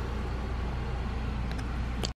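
A steady low hum with a soft even hiss, unchanging throughout, with one faint tick about one and a half seconds in.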